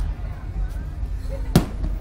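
A single sharp thump about one and a half seconds in, from the Slingshot ride capsule as it is brought to rest, over a steady low rumble of wind and motion on the onboard camera's microphone.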